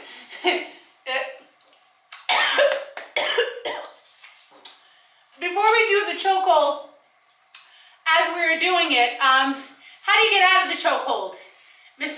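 A person held in a choke hold, coughing in short bursts, then making three drawn-out, strained voice sounds with wavering pitch.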